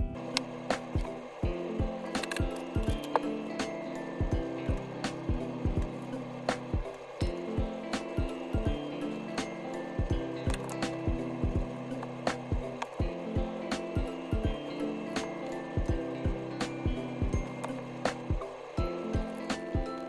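Soft background music with slow held notes, over frequent irregular clicks and taps on a desk, a few each second, from writing and handling things on the desk.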